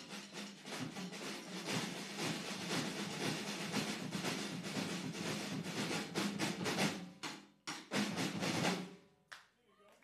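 Marching drum line of snare and bass drums playing a fast drum solo. It breaks into a few final accented hits about seven seconds in and stops shortly before the end.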